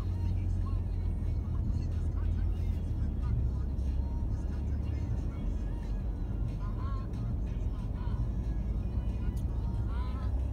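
Road and engine noise inside a moving vehicle's cabin at freeway speed: a steady low rumble.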